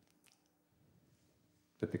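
Near silence with a couple of faint clicks about a quarter second in; a man's narrating voice comes back near the end.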